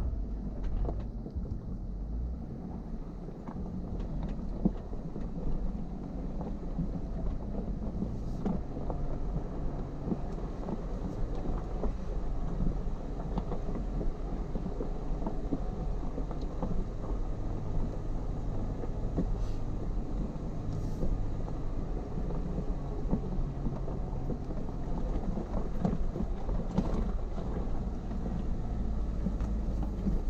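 2016 Jeep Wrangler Unlimited Rubicon crawling slowly down a loose rocky trail: its 3.6-litre V6 runs low under a steady rumble, with the tires crunching over rock and frequent small knocks and rattles.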